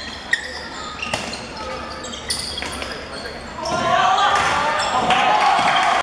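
A handball bouncing on a wooden sports-hall floor in a few sharp thuds, with shoe squeaks, all ringing in the large hall. From about four seconds in, players and spectators shout loudly as play breaks forward.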